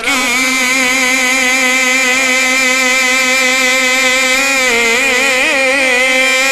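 A man singing a naat without accompaniment, holding one long note through a microphone and PA, with a wavering vocal ornament about five seconds in.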